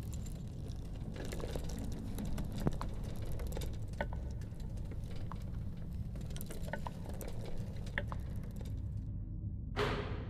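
A steady low hum with faint, scattered clicks and light rattles, then a sharp hit just before the end that rings out briefly.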